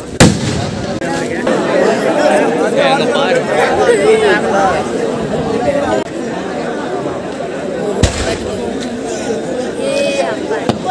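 Aerial firework shell bursting with a loud, sharp bang just after the start, followed about eight seconds in by a second, quieter firework bang.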